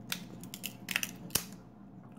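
Glossy 1991 Stadium Club baseball cards being peeled apart and handled: a few short papery rustles and a sharp snap about a second and a half in. The cards are stuck together, and separating them tears paper off their surfaces.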